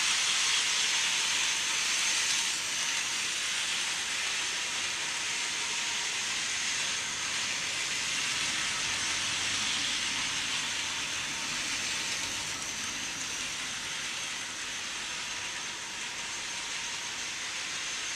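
Hornby OO-gauge 0-4-0 tank engine model pulling a wagon and coach around an oval of track. Its small electric motor and wheels on the rails make a steady whirring hiss that gradually gets quieter as the controller is turned down from full speed.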